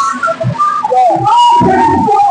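A woman singing solo into a microphone, a high melodic line with held notes that slide from one pitch to the next.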